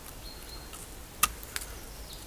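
A knife carving a fresh stick of wood: one sharp cut about a second in, with a fainter stroke or two around it, against quiet outdoor background.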